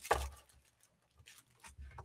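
Light handling noises of a cardboard Lego box and plastic-bagged pieces on a wooden table: a short rustle at the start, then a few faint taps and rustles.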